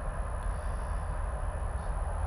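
Steady low rumble with a faint even rush: the running background of a reef aquarium's pumps and circulating water.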